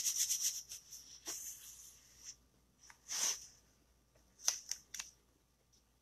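Quiet rustling, then a few short scrapes and crinkles, as a plastic chalk transfer sheet is picked up and handled.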